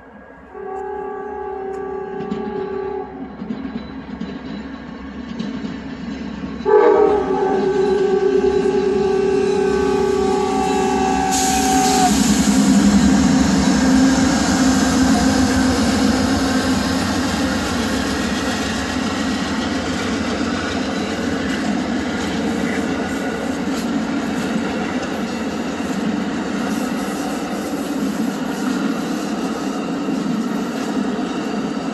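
Amtrak passenger train sounding its horn chord twice on the approach, a short blast and then a longer, louder one, followed by the loud, steady rush of the train passing close by on the rails.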